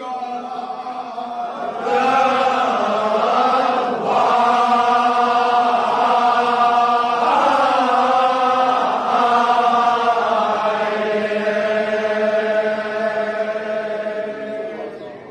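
Men's voices chanting a Kashmiri marsiya, a mourning elegy, in long held notes with short breaks between lines.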